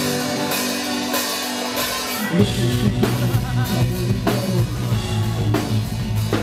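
Rock band playing live and loud: distorted guitars and a drum kit, with the deep bass and kick drum dropping out at the start and crashing back in hard about two seconds in, then a steady pounding beat.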